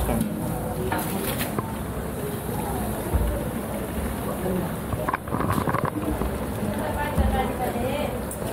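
Water poured from a steel vessel into a large aluminium pot of hot frying tomato-onion masala, the masala sizzling as steam rises, with voices in the background.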